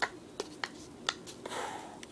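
Several sharp, separate clicks and a short rustle of stiff paper being fingered, as a rolled paper dart is fitted into a homemade paper-tube dart shooter.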